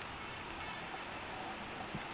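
Steady city street traffic noise: an even hiss with no single vehicle standing out.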